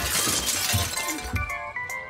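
A window pane shattering: a sharp crash of breaking glass that fades over the first half second, over background music.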